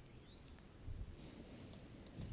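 Near silence: faint background ambience, with one faint, short, high chirp about half a second in.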